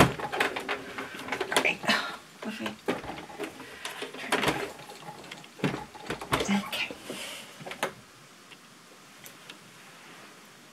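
Clicks, knocks and rattles from a plastic-bodied Singer sewing machine being handled and lifted by its carry handle. The knocks come in a quick, irregular run and stop about eight seconds in.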